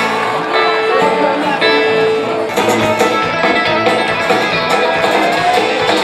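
Live band music led by a strummed acoustic guitar, with held notes at first and a fuller rhythmic accompaniment joining about halfway through.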